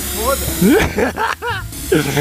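Air hissing out of a car tyre's valve as the valve core is held down with a small tool, deflating the tyre; the hiss is strongest in the first half-second and again near the end. Laughing, exclaiming voices sound over it.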